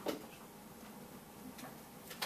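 Quiet room with a few small sharp clicks: one clear click right at the start, then a couple of fainter ticks later on.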